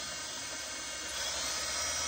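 Cordless drill running slowly with its bit cutting into the soft metal of a Hydro-Gear EZT 2200 transmission case. It is a steady whine that grows slightly louder a little over a second in.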